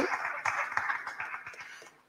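Audience and panelists applauding, the clapping dying away over about two seconds.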